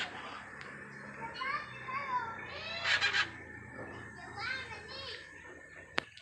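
Caged parrots calling in short, voice-like chattering calls, with the loudest call about halfway through.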